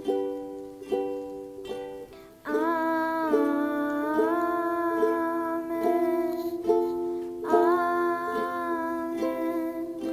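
Ukuleles strummed in a slow, even rhythm, about one stroke every second, with a boy's solo singing voice coming in about two and a half seconds in on long held notes, pausing briefly past the middle and picking up again.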